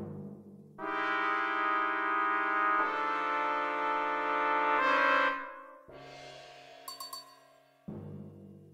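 Orchestral music led by brass: a loud held brass chord enters about a second in, moves to a new chord partway through and fades, followed by a softer held chord and a sharp new chord attack at the very end.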